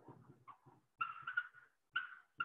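Dry-erase marker squeaking on a whiteboard in short strokes as letters are written, with a cluster of high squeaks about a second in.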